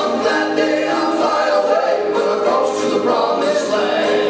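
Male gospel vocal trio singing in harmony, with piano accompaniment.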